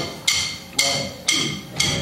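Sharp wooden clicks at a steady beat, about two a second, counting a band in before a song.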